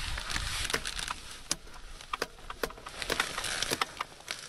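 Motorcycle drive chain on a Ducati DesertX giving irregular light clicks and rattles as it is lifted and worked by hand to check its slack, over a faint steady hiss. The chain has about a thousand kilometres on it and barely needs adjusting.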